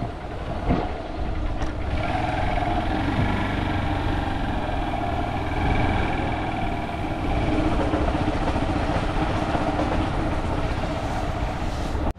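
A motorbike engine running steadily while riding along, with heavy wind rumble on the microphone.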